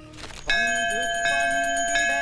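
A temple bell starts ringing about half a second in and keeps ringing, with a second set of ringing tones joining just after a second in. A low wavering melody runs beneath it.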